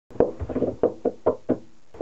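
Hands drumming on a tabletop: about seven quick knocks in an uneven rhythm, the last after a short pause.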